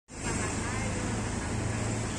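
Steady city street traffic noise with a constant low engine hum underneath.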